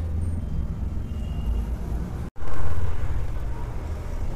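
A steady low rumble, cut off for a moment by a brief dropout a little past halfway, with a few faint thin tones above it.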